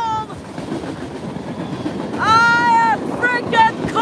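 BNSF freight train cars rolling past close by with a steady rumble and clatter. About two seconds in, a high voice shouts one long call over it, rising, holding and falling, followed by two short ones near the end.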